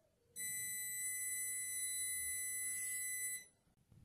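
Synthesized 2000 Hz sawtooth wave: a steady, high-pitched electronic tone held for about three seconds. It starts a moment in and cuts off well before the end.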